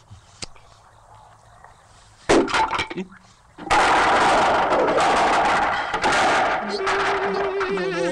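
Cartoon sound effects: a sudden loud bang about two seconds in, with a few smaller cracks after it, then from about halfway a long, loud, noisy crash that runs on.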